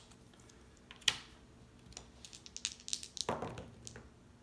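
Dice being rolled on a tabletop: a sharp click about a second in, then a quick run of faint clicks as they tumble and settle.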